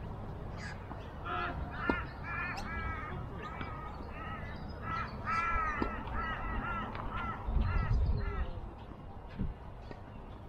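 A bird calling over and over: a run of short, harsh calls, each rising then falling in pitch, from about a second in until near the end. A brief low rumble comes about three quarters of the way through.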